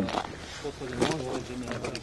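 Men's voices talking in the background, quieter and less distinct than close speech, with a few light clicks.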